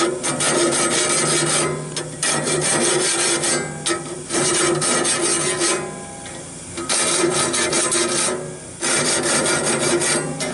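Hand file rasping over the steel teeth of the LT15 sawmill's band blade in quick short strokes, sharpening the teeth. It comes in about five runs of a second or two each, with brief pauses between them.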